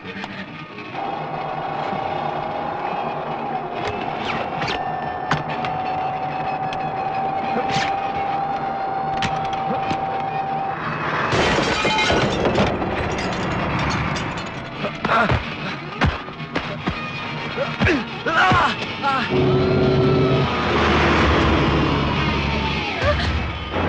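Dramatic film score with a long held note, then a loud crash with glass shattering about halfway through, followed by a series of sharp impacts over the music.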